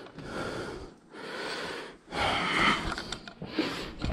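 A man breathing hard close to the microphone: about four breaths of roughly a second each, with short pauses between.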